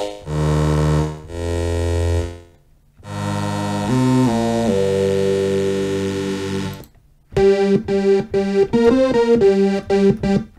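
FXpansion DCAM Synth Squad's Strobe software synthesizer playing presets: a few held chords at the start, a longer held chord from about three seconds in with a couple of note changes, then a run of short, clipped notes from about seven seconds in.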